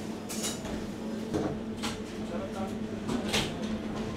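Bakery shop ambience: a steady low hum with a handful of short clinks and clatters scattered through it, and faint murmuring voices in the background.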